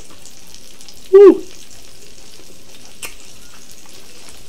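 Cowboy steak sizzling on a piping hot grill plate: a steady frying hiss. A man's short "woo" cuts in about a second in.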